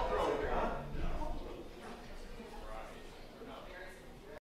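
The last strummed chord of acoustic guitars ringing out and fading away, then faint indistinct talk in the room.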